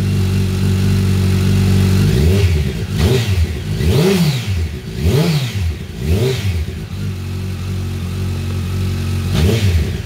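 Honda CBR1100XX Super Blackbird's inline-four idling, then revved in about five quick throttle blips in the middle and once more near the end, each rising and falling back to idle. It breathes through Scorpion carbon slip-on cans with the baffles removed.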